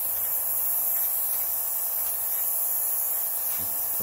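Gravity-feed airbrush spraying paint: a steady high hiss of air and atomised paint, with a faint steady hum underneath.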